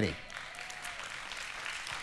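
Congregation applauding: a steady spread of clapping from many hands in a large hall.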